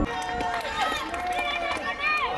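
Several voices shouting and calling out across an open athletics stadium, their pitch rising and falling, with short clicks and a faint crowd behind.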